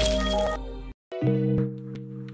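Channel outro music with sound effects: a loud noisy swell fades out in the first half second, cuts to a brief silence just before one second in, then a held synth chord begins with a couple of sharp clicks over it.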